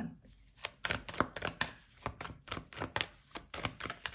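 Tarot cards being handled and shuffled in the hands: an irregular string of light card clicks and snaps, a few a second.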